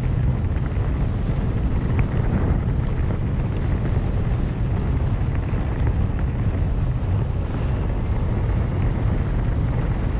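Wind buffeting the microphone of a camera moving along a dirt trail: a steady low rumble, with a few faint ticks about two seconds in.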